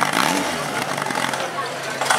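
Engine of a portable firesport fire pump running, then cut off about half a second in, its pitch falling as it spins down and stops, with voices around it.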